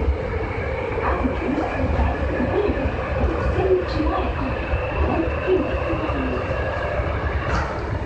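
Osaka Metro 5300-series subway train running through a tunnel, heard from inside the car: a steady low rumble of the wheels on the rails, with a faint steady high whine.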